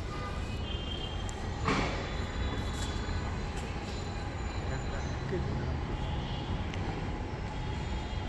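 Plastic-wrapped bundles being handled and set down on a pile, with a short rustling thump about two seconds in and a smaller one about a second later, over a steady low rumble and faint background voices.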